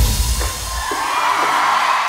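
A live pop band's backing track ends under a second in, its bass and drums stopping, and a concert audience's cheering swells up in its place.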